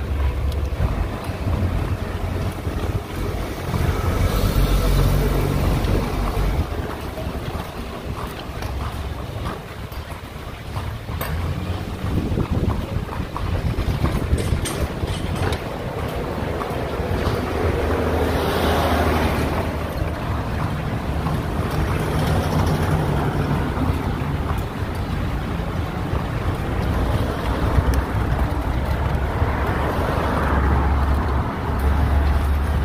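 Wind buffeting the microphone over a steady low rumble of street traffic, heard from an open horse-drawn carriage in motion, swelling and easing in gusts, with a few faint knocks.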